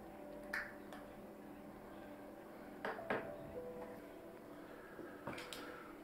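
A handful of soft plastic clicks and taps as small wireless earbuds and their plastic charging case are handled and fitted together, over faint background music.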